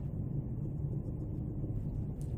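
Low steady room hum with faint handling sounds as a metre stick and dry-erase marker are positioned against a whiteboard, and a couple of faint light taps near the end.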